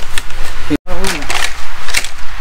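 Two brief snatches of a person's voice over a loud, steady low rumble, with a sudden cut to silence lasting a split second about a second in.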